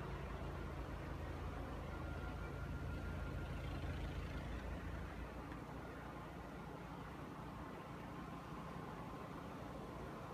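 Snowblower engine running steadily at a distance, a low hum, a little quieter in the second half.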